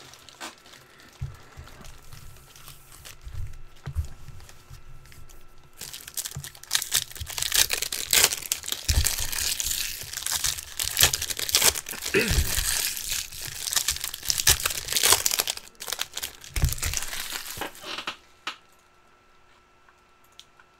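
Foil trading-card pack wrappers crinkling and tearing as packs are handled and ripped open. Quiet handling at first, then dense, crackly crinkling from about six seconds in until shortly before the end.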